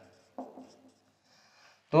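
Marker pen writing on a whiteboard, faint scratchy strokes, with a brief louder sound about half a second in. The man's voice comes back at the very end.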